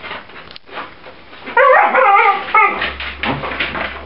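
A puppy whining in a quick run of short, wavering high-pitched cries for about a second, starting about a second and a half in. Around it, scuffling and rustling of puppies rummaging in a plastic laundry basket of toys.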